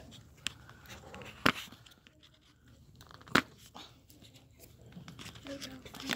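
Homemade slime being stirred and worked in a plastic cup with a plastic spoon: soft, faint sticky sounds, broken by two sharp clicks about two seconds apart.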